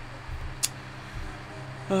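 A steady low background hum, with a single short click just over half a second in.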